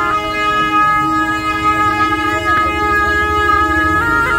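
Tibetan gyaling, double-reed horns with metal bells, played by monks as long, steady, reedy held notes.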